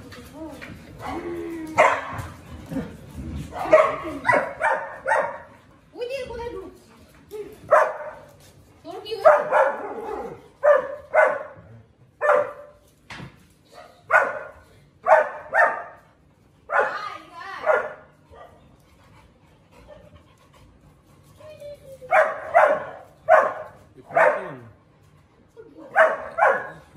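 Large dog barking repeatedly, in short runs of two to four barks with pauses between.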